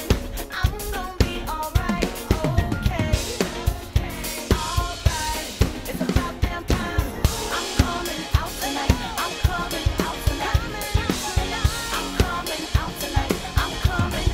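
Live acoustic drum kit played in a steady groove, with evenly spaced kick and snare hits and cymbals, over a pop recording with a sung melody.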